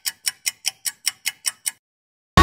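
Quiz countdown sound effect: a rapid run of bright clock-like ticks, about five a second, stopping shortly before the end.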